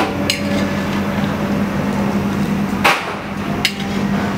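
Metal skimmer striking the rim of a large iron kadhai of frying dough rings: three sharp clanks, one just after the start and two about three seconds in, over a steady low hum.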